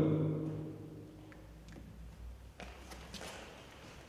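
A man's voice trailing off in the first second, then a quiet low hum with a few faint soft knocks.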